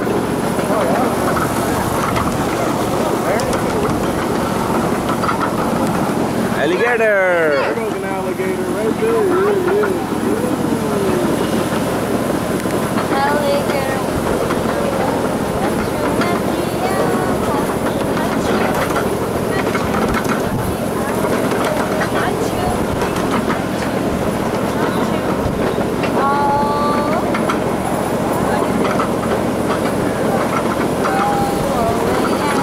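Small ride-on train running along its track, a steady rumble and clatter of wheels, with a brief gliding squeal about seven seconds in.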